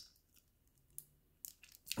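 Near silence with a few faint clicks, one about a second in and a couple more shortly before the end.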